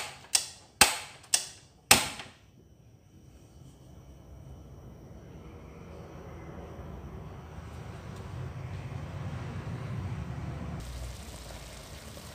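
Gas stove's ignition knob clicking four times in the first two seconds, then the lit burner running with a low rushing sound that slowly grows louder.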